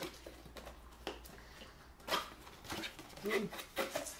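Cardboard box being handled and its lid opened: faint scraping and rustling of cardboard that pick up about halfway in, with a short voiced sound near the end.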